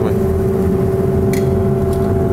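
Extractor hood fan running with a steady hum and a low rumble, with a short hiss about one and a half seconds in.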